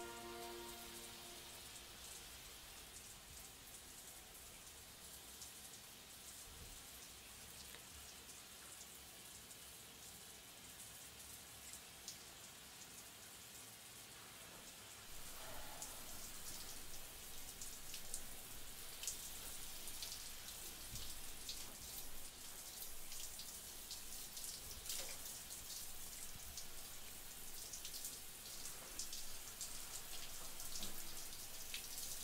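Shower running, water spattering on skin and the shower floor. It is a faint hiss at first and gets louder and more spattery from about halfway through.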